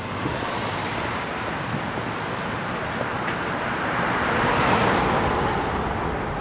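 City street traffic noise: cars and taxis driving by in a steady wash, swelling louder about four to five seconds in as a vehicle passes.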